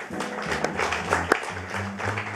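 A live jazz group playing, led by the drum kit's cymbal and drum strikes over double bass notes.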